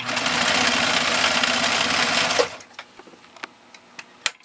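1948 Husqvarna Viking Model 8 sewing machine running fast on its 1.5 amp motor, stitching through a thick layer of cowhide leather with a rapid, even needle beat and no sign of labouring. It stops suddenly about two and a half seconds in.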